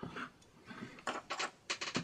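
Handling sounds on a desk: faint scrapes, then a quick run of sharp clicks in the second half as a spatula works acrylic texture paste out of its pot and a metal miniature on its base is picked up.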